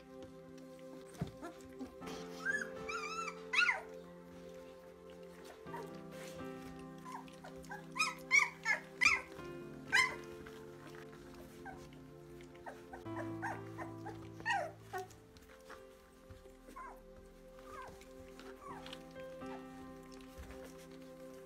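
A litter of young Labrador puppies crying: short, high, wavering whimpers and squeals in clusters, loudest in a run of four sharp cries near the middle. Background music of sustained chords plays underneath.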